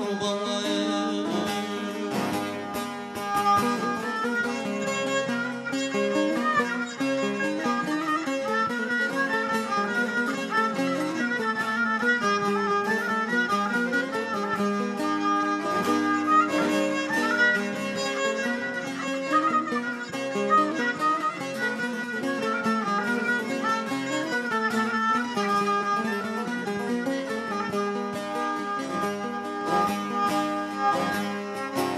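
Instrumental Turkish folk music (türkü): a bağlama (saz) is plucked in a quick, continuous run of notes, joined by a bowed kabak kemane (spike fiddle).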